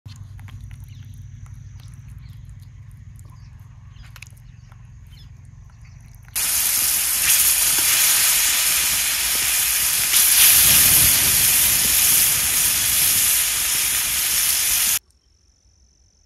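Masala-coated fish steaks sizzling in hot oil on a tawa: a loud, steady sizzle that starts abruptly about six seconds in and cuts off near the end. Before it, quieter handling sounds of masala paste being rubbed onto raw fish, with a faint steady high insect trill behind.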